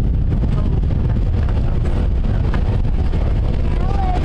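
Wind buffeting the camera microphone: a loud, steady low rumble with a rough, fluttering hiss above it.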